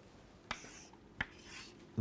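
Chalk on a blackboard: a scraping stroke about half a second in, a sharp tap of the chalk against the board just past a second, then a fainter scrape as a line is drawn.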